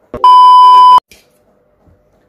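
A loud, steady 1 kHz beep lasting under a second, beginning just after a click and cutting off suddenly. It is the test tone that goes with TV colour bars, used here as an editing transition.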